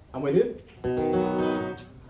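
A short spoken remark, then a chord on an acoustic guitar that rings steadily for about a second before fading.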